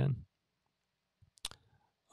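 A single sharp computer mouse click about a second and a half in, just after a couple of faint ticks, against otherwise silent background.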